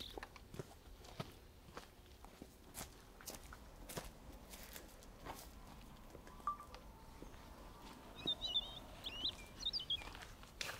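Soft, irregular footsteps on a dirt hiking trail, with a bird chirping a few times near the end.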